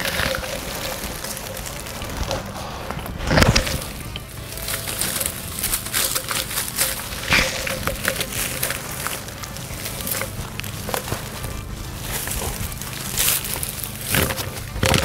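Background music with irregular rustling and crackling of dry leaves and branches as a corrugated plastic hose is pushed through a shrub, with one louder knock about three and a half seconds in.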